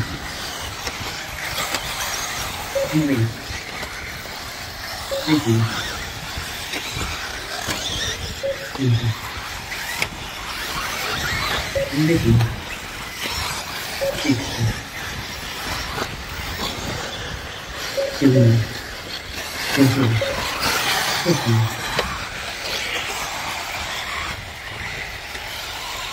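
1/8-scale off-road RC buggies racing on a dirt track, their high-revving engines whining. Over and over, every couple of seconds, the pitch drops sharply as the cars lift off and brake for corners, then climbs again.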